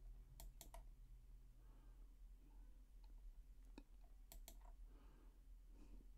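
Near silence with a few faint clicks from a computer being worked: three quick clicks in the first second and three more around four seconds in.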